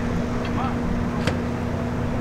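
Steady idling engine with a constant low hum, joined by faint voices and a single sharp click about a second in.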